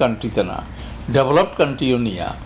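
A man speaking Bengali in two short bursts with a brief pause between them, over a steady low hum.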